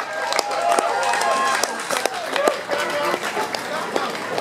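Audience clapping in scattered, uneven claps, with voices and shouts from the crowd.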